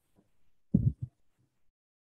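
Two short, low thumps close together, a little under a second in; the rest is near silence.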